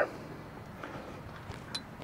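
Quiet outdoor background with a few faint, light clicks as a hand handles the stainless steel blower adapter fitted into the grill's lower vent.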